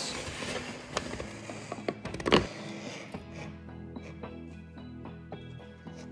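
Hand scoring tool scratching along the surface of a Formica laminate sheet for about two and a half seconds, ending with one louder scrape. Quiet background music runs underneath and carries on alone after the scratching stops.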